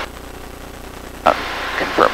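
Steady low drone of a Van's RV light aircraft's piston engine in flight, faint and even, with voices coming back in a little past halfway.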